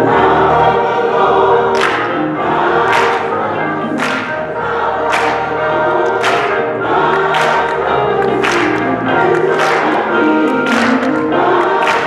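Gospel music: a choir singing, backed by an electric guitar, with a sharp beat about once a second.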